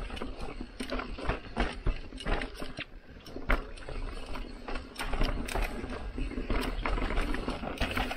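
Mountain bike riding down a rocky, rooty trail: irregular knocks and rattles from the bike as the tyres strike rocks and roots, over a low rumble.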